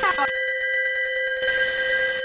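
A steady electronic ringing tone of several pitches held together, with a burst of static hiss starting about a second and a half in: a TV-static sound effect.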